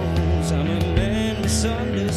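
Live acoustic band music: a man singing over acoustic guitar with sustained low notes underneath.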